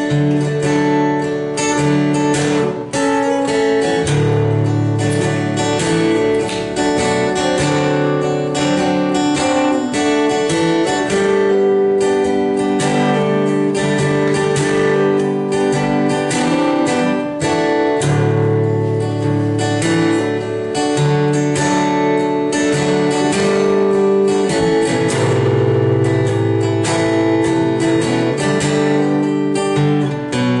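Solo steel-string acoustic guitar playing the opening of a song in a steady picked-and-strummed pattern, with bass notes that change every second or two under ringing chords.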